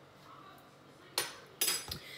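Two brief, loud handling noises close to the microphone, the first about a second in and the second near the end, as kitchen things are handled at the counter.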